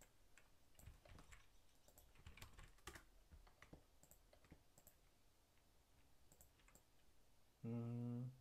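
Faint computer keyboard keystrokes and clicks, scattered and irregular, as text is selected and copied. Near the end comes a brief low hum.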